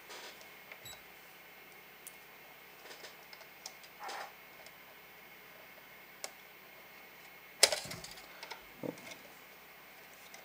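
Light clicks and taps of multimeter test probes and their leads handled against the lamp's plastic housing and wire connector, with one sharper click about three-quarters of the way through.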